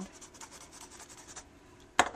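Thick graphite lead of a Cretacolor pencil rubbing across sketchbook paper in quick, faint shading strokes. A single sharp knock comes right at the end.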